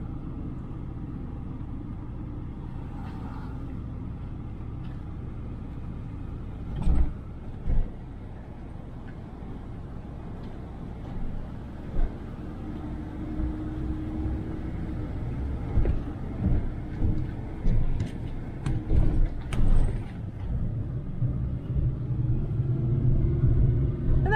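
Ram Promaster van driving slowly, heard from inside the cabin: a steady low rumble of engine and tyres on the road. There are a couple of thumps about seven seconds in and a cluster of irregular bumps a few seconds before the end.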